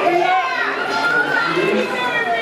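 Several spectators shouting and calling out at once, their voices high-pitched and overlapping as sprinters run the race.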